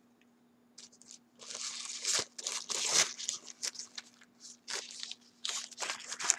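Taco Bell burrito paper wrappers being torn and crumpled off by hand: a run of irregular crinkling and tearing noises, busiest between about one and a half and three seconds in, with a second flurry near the end.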